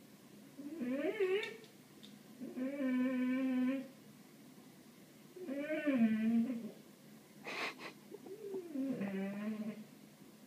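Labrador–Weimaraner mix dog whining in four drawn-out whines, one held on a steady pitch and the others sliding up and down, with a short breathy snuff before the last. He is whining with excitement at birds outside the window.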